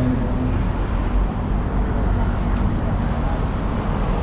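Steady city road traffic, a low rumble under an even hiss. The last of a chanted note fades out in the first half second.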